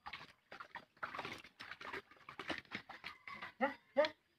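Cleaver chopping raw chicken on a wooden block: irregular knocks and rustling, with a short pitched call, voice-like or a bark, as the loudest sound near the end.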